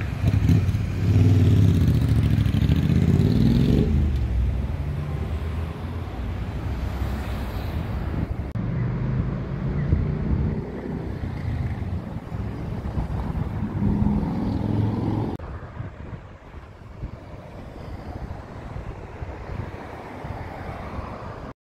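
City street traffic: motor vehicles driving past close by, with an engine's pitch rising as it accelerates about three to four seconds in and again around fourteen seconds. The traffic drops suddenly to a quieter hiss near the end.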